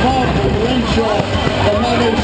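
A race commentator talking excitedly over the finish-line loudspeakers, the words blurred, above a steady low background rumble.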